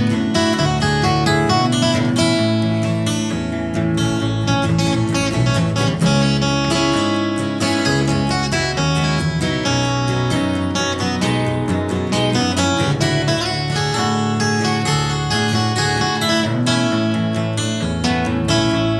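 Instrumental passage of a small band: acoustic guitars strummed and picked over an electric bass line, steady throughout.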